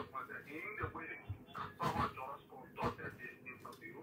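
A caller talking over the phone line, fainter than the studio voices and indistinct.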